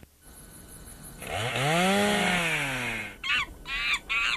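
A chainsaw revving up and back down over about two seconds after a brief quiet gap, followed near the end by a run of quick, high, falling chirps.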